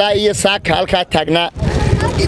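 A man speaking into a handheld microphone, with a low rumble under his voice in the pauses, strongest near the end.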